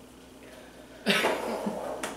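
A woman's run of short, breathy, cough-like bursts, starting about a second in.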